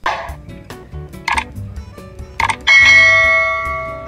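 Background music with a subscribe-button sound effect over it: a few short clicks, then a bell ding about three seconds in, which is the loudest sound and rings on while fading.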